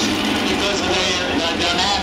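Porsche 917LH's air-cooled flat-twelve engine running steadily at low revs as the car rolls slowly past, with people talking over it.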